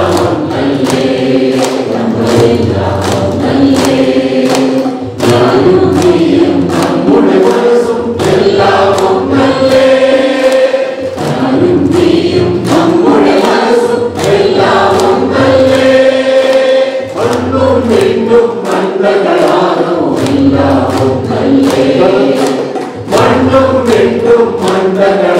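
A crowd of people singing together and clapping their hands in a steady rhythm.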